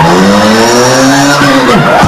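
A man's voice through a microphone imitating a race car: a sustained buzzing engine-like tone climbing in pitch, then a quick swooping screech like a tyre squeal near the end.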